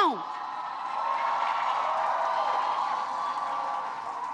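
A large crowd cheering and applauding, swelling about a second in and easing off near the end.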